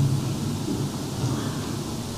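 A pause between a man's sentences at a podium microphone, filled by a low rumble of room noise that fades slightly.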